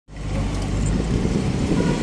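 Cars driving past close by on a busy street: steady engine and tyre noise.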